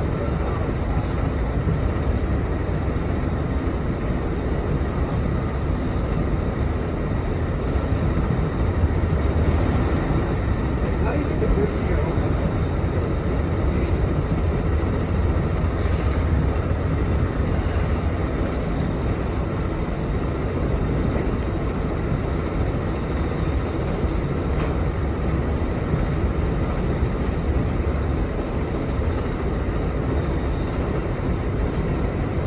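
Steady rumble and rail noise inside a passenger train coach running at speed, with faint scattered clicks and a brief hiss about halfway through.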